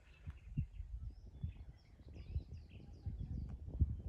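Small birds chirping, many short high calls scattered through the first couple of seconds, over an uneven low rumble of wind on the microphone.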